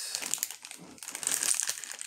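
Plastic Hot Wheels Mystery Models blind bag crinkling as it is handled. The crackle is irregular and loudest about one and a half seconds in.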